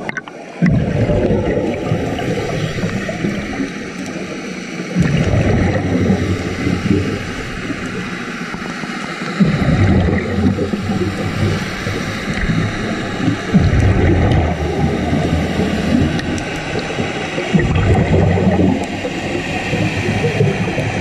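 Scuba breathing recorded underwater: a diver's exhaled bubbles gurgle and rumble in surges that return about every four seconds, with a steady hiss between them.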